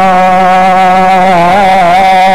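A man singing one long held note of an Arabic devotional qasida (Maulid recitation), wavering slightly in pitch in the second half.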